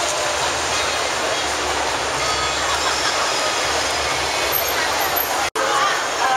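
Steady hubbub of a crowded city street: many voices mixed with traffic noise. About five and a half seconds in, the sound cuts out for an instant and comes back.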